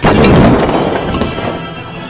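A sudden loud crash of a stack of bricks toppling and clattering down, dying away over about a second and a half, over background music.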